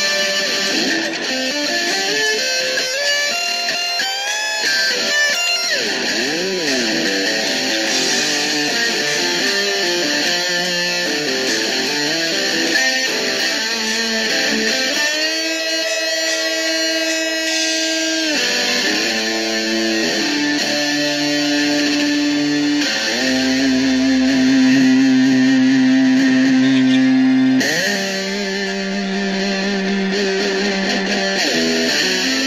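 Home-built Les Paul Junior-style electric guitar played through an amp: single-note lead lines with string bends, then long held notes, the loudest ringing for about four seconds near the end.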